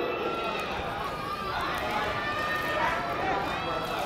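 Faint, distant voices over the open-air hum of an athletics stadium. There are no loud events.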